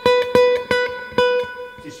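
Godin Multiac Nylon SA nylon-string electric guitar: one high note plucked four times in quick succession, bright and rich in overtones, the last pluck left ringing until it fades about a second and a half in.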